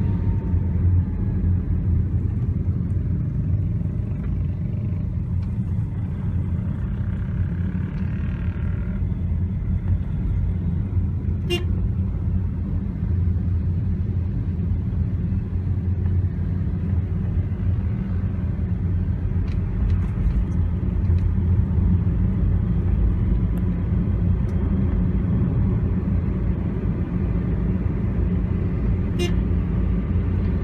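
Steady low rumble of a taxi driving through traffic, heard from inside the car's cabin, with motor scooters all around. A car horn toots briefly about eight seconds in, and there are two short clicks.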